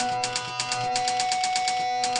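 Rapid typewriter key clicks, about seven or eight a second, as a sound effect over background music with steady held tones.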